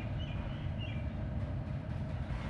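Roller garage door being raised by its GDO-9V2 electric opener, a steady low rumble of motor and rolling door heard from inside the car.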